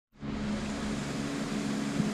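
Steady mechanical hum of a running machine, with a low droning tone over a soft hiss.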